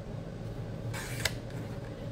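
Sliding-blade paper trimmer cutting cardstock: the blade carriage makes a short swish along the rail about halfway through, ending in a sharp click.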